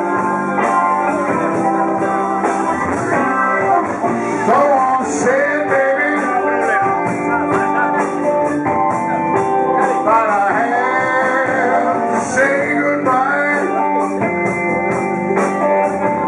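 Live blues band playing an instrumental passage on electric guitar, keyboards, bass and drums. Lead lines bend up and down in pitch over a steady cymbal beat.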